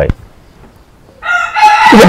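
A rooster crowing once, starting a little over a second in, with a man's voice starting up under it near the end.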